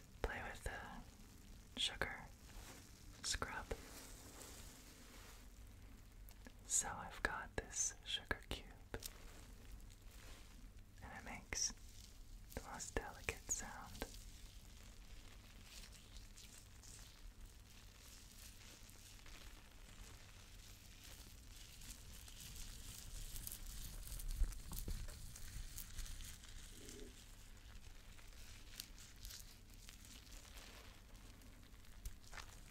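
Bubble-bath foam being rubbed and pressed between hands close to the microphone, its bubbles popping softly, with soft whispering in the first half.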